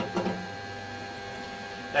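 Steady machine hum made of several fixed tones, with a short voice-like sound at the very start.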